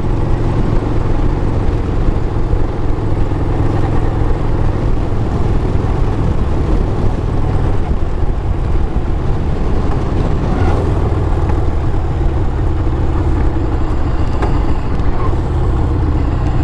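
Panhead V-twin engine of a custom rigid bobber running steadily under way at road speed, with road and wind noise.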